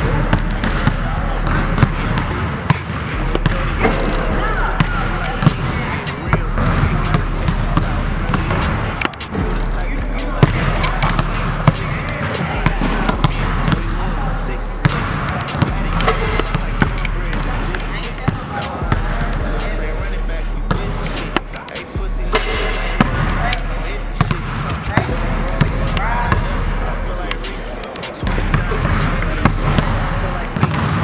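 Several basketballs bouncing repeatedly on a hardwood gym floor as players dribble, a steady stream of sharp bounces. A hip-hop track with a heavy bass line plays under them.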